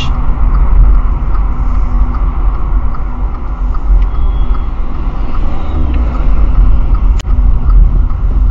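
Steady road and engine rumble of a car heard from inside its cabin through a windscreen dashcam, as the car slows on the approach to a roundabout. One short sharp click sounds about seven seconds in.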